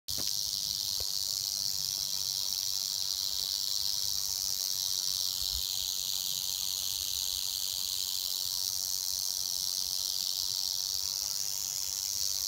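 Canebrake rattlesnake rattling its tail: a steady, high-pitched buzz that does not break. It is the warning of an agitated snake.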